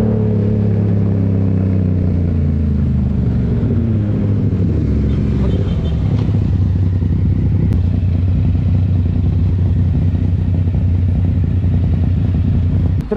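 Yamaha MT motorcycle engine heard from the rider's seat. Its note falls over the first few seconds as the bike slows from about 65 km/h, then it runs on as a steady low drone.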